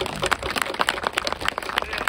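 Crowd of supporters applauding: many irregular hand claps, some close and sharp, standing out from the rest.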